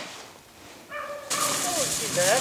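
Beagle gives a high, held whine about a second in, then short falling yips over loud rustling of dry leaves.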